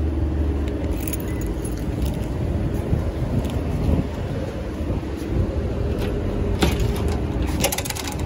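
A bunch of keys jangling in the hand while walking, over a steady low rumble. A few sharp clicks come about a second in and again near the end.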